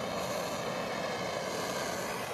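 Hand-held propane torch burning with a steady hiss, its flame held on a sheet of polycarbonate to soften it for bending.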